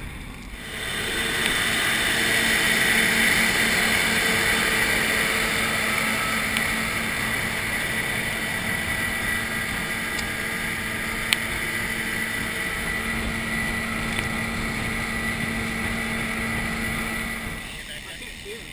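Wind rushing over an action camera's microphone while riding a road bike at speed, with a steady hum underneath. It starts suddenly about half a second in and stops just before the end.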